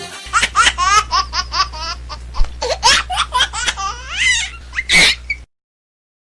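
High-pitched giggling laughter of a small child: a quick string of short bursts, each sliding up and down in pitch, which cuts off abruptly about five and a half seconds in.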